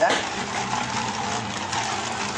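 Two Beyblade Burst tops, Winning Valkyrie and Phoenix, spinning on a steel stadium floor with a steady whirring, scraping sound.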